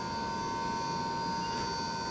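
Steady electrical hum inside an elevator car: an unchanging hiss with several thin, high whining tones held throughout.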